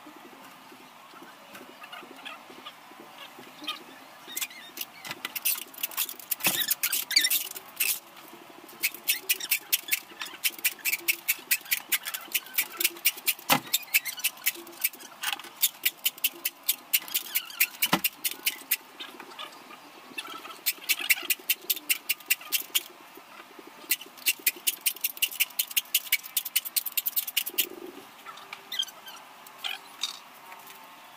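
Rapid scratching or scraping strokes on a homemade can-cannon tube, several a second, in long runs with a short pause partway through. Two dull knocks sound against the tube in the middle of the scraping.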